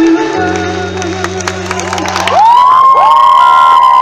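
Live pop band playing on stage with the crowd cheering. About two and a half seconds in the music gets louder, with high notes that slide up and are held.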